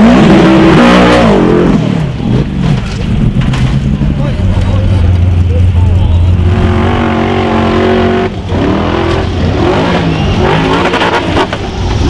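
Formula Offroad hill-climb buggy engines run at full throttle, the pitch rising and falling sharply with wheelspin and bouncing over the slope. In the middle the pitch holds high and steady, then swings up and down again, across several run clips cut together.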